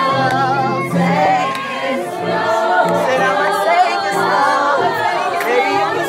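A group of voices singing a gospel song together, several wavering pitched lines overlapping over steady held low notes.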